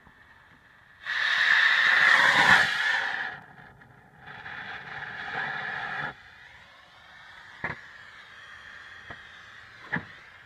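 A smoke bomb hissing as it ignites: a loud hiss starting about a second in and lasting a couple of seconds, then a weaker one for about two seconds, followed later by a single sharp click.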